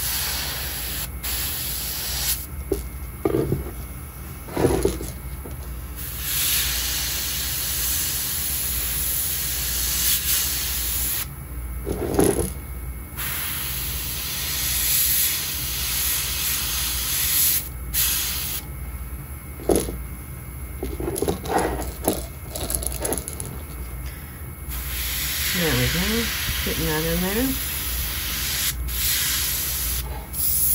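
Airbrush spraying paint: the compressed-air hiss from the nozzle runs in long passes, stopping and restarting several times with short pauses between.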